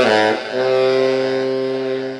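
Cannonball tenor saxophone played solo: a quick falling run that settles into one long held low note.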